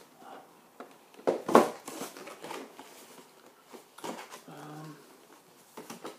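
Cardboard collectible-figure box being handled and turned over: scattered rustles and scrapes, with one loud brushing scrape about a second and a half in. A man gives a brief hum near the end.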